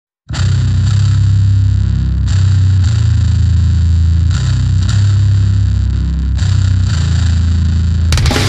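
Intro riff of a death/grind track: a heavily distorted, low-tuned electric bass playing long held notes that change pitch every second or so, starting abruptly just after the opening instant.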